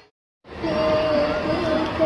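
Chatter of a large outdoor crowd, with a steady, slightly wavering held tone running above it. The sound drops out completely for about half a second at the start.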